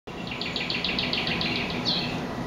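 A bird singing: a quick, even run of about a dozen high chirps, each falling in pitch, about seven a second, ending on one louder note. A faint steady low hum runs underneath.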